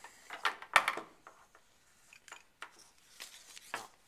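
Metal Bunsen burner being handled and set down on a lab benchtop: a cluster of knocks and clinks in the first second, the loudest a sharp knock just under a second in, then a few faint clicks and a last knock near the end.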